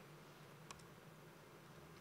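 Near silence in a room, with one faint click under a second in: a laptop key or presentation clicker pressed to advance a slide.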